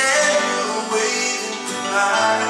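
A man singing live with a strummed acoustic guitar and an electronic keyboard playing chords.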